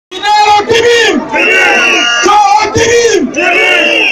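A man shouting a rally call through a microphone and loudspeakers, over crowd noise. The call comes in two parts, a lower shout then a higher held cry, given twice.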